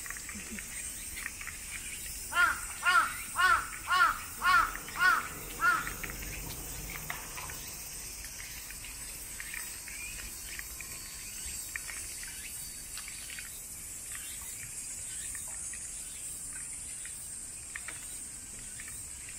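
A crow cawing seven times in a quick run, about two caws a second, a couple of seconds in. Under it runs a steady high drone of summer insects.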